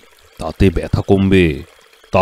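Speech: one short spoken phrase or drawn-out vocal utterance, with brief pauses before and after.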